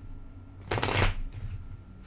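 A deck of tarot cards shuffled by hand: one quick fluttering run of cards slipping through the hands about halfway through, with soft handling taps around it.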